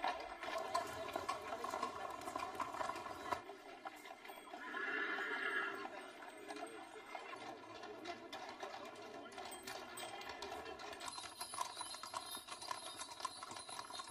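Many horses' hooves clip-clopping at a walk on an asphalt street, a dense, uneven patter of hoofbeats. A horse neighs once, about five seconds in.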